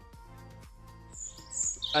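Soft background music with steady held notes, and a small bird chirping high and brief about a second in.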